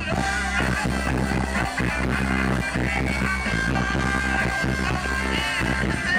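Live band music with trumpet and electric bass over a steady beat, with a note held from about three to five and a half seconds in.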